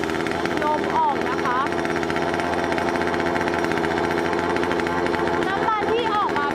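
Kanto KT-CS1700 chainsaw's small two-stroke engine running steadily without cutting, an even buzzing drone.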